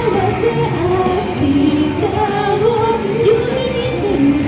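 A woman singing a pop anime song into a microphone over a loud, steady backing track, heard through the stage's PA speakers in a large hall.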